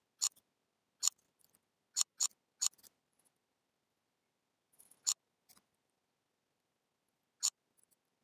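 Sharp single clicks of a computer mouse and keyboard during text editing, at irregular intervals: a quick cluster of five in the first three seconds, two more around the middle and one near the end.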